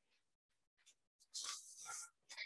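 Near silence, then a brief faint hiss-like noise about one and a half seconds in.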